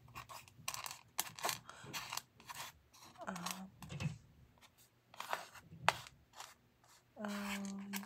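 Small wooden letter tiles clicking and scraping against each other and a wooden board as hands stir them, a string of irregular light clicks.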